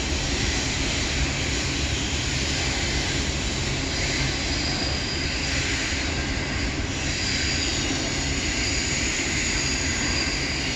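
Double-stack intermodal container cars of a freight train rolling across a stone arch bridge overhead, a steady rumble of wheels on rail. A faint high squeal comes and goes from about four seconds in.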